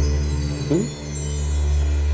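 Background music score: a sustained low drone under high, chime-like tinkles, with a brief rising sweep just under a second in.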